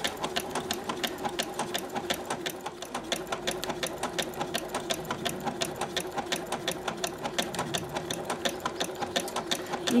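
Husqvarna Viking electronic sewing machine running continuously on a decorative cross stitch, a fast, even rattle of needle strokes over a steady motor hum.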